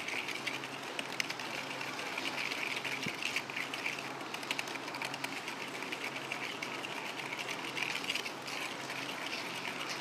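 A whisk beating curd and brown sugar in a bowl: a rapid, continuous clatter and scrape of the whisk against the bowl as the sugar is mixed in to dissolve.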